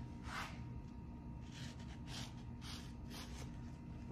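A few faint, brief scratchy rustles from a plastic wood-graining rocker tool being handled and worked over a wet-painted wooden strip, against a quiet room.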